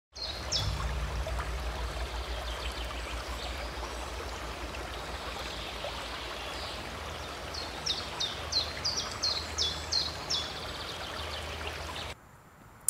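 Steady rush of flowing water, with a bird calling a few times near the start and then singing a run of quick down-slurred notes, about three a second, in the last few seconds.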